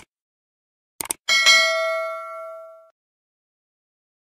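Sound effect of a subscribe-button animation: quick mouse clicks, then a single bell ding about a second and a half in that rings out and fades over about a second and a half.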